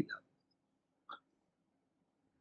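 A pause in a man's speech: near silence with faint room tone, broken about a second in by one short, soft mouth or throat sound at the microphone.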